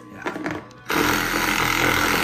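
Cordless reciprocating saw starting suddenly about a second in and running steadily, cutting into a snowmobile's plastic snow flap.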